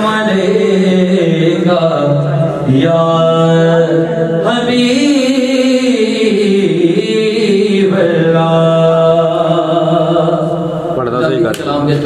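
A man's solo voice singing a naat, a devotional poem in praise of the Prophet Muhammad, in long drawn-out notes that waver and bend in pitch.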